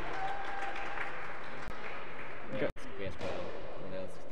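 Echoing sports-hall ambience: a steady background hiss with faint, distant players' voices, and the sound cutting out for an instant about two-thirds of the way through.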